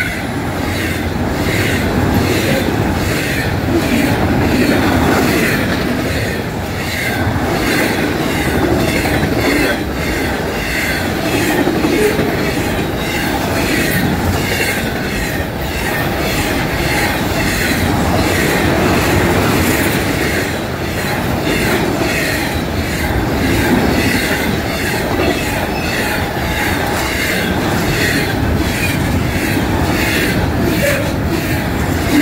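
Double-stack intermodal freight cars rolling past close by, loud and steady, their wheels clattering in a regular rhythm over the rails with a recurring high wheel squeal.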